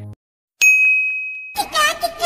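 Edited-in sound effect: after a brief silence, a bright ding rings out about half a second in and holds for about a second. Near the end it gives way to a short wavering, bending tone.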